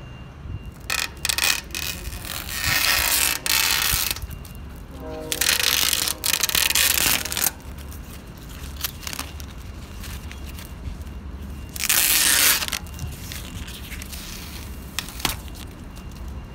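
Duct tape and torn screen mesh handled and pulled at on a pool-enclosure screen: four loud bursts of rustling and tearing, the longest in the middle, over a steady low hum.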